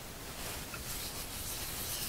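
A hand rubbing dry spice rub into the meat side of a raw pork belly slab: faint, soft rubbing, a little louder from about half a second in.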